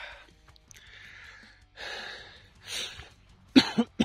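A person breathing audibly in several short, hissy breaths close to the microphone, with a sharp cough near the end.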